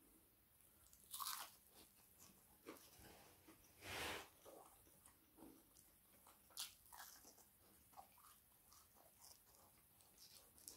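Faint close-up biting and chewing of battered fried fish, with short crisp crunches scattered through; the longest, loudest crunch comes about four seconds in.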